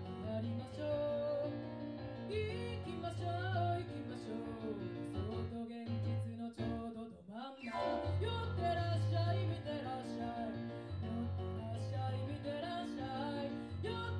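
A female singer-songwriter sings and accompanies herself on a Roland FP-4 digital piano, playing sustained chords over a steady bass line. The accompaniment thins out briefly about halfway through, then comes back in full.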